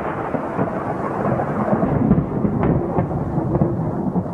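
Thunder sound effect: a loud, continuous rolling rumble of thunder, with a couple of sharper cracks about two and a half and three seconds in.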